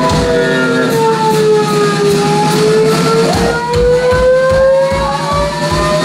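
Live band playing loudly. A held note slowly dips and then rises in pitch, and a low regular beat comes in about halfway.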